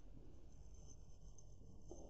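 Near silence: faint room tone with a light rustle of a hand and pen moving over a notebook page.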